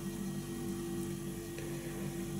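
Steady low electrical hum with faint background hiss, no distinct handling sounds.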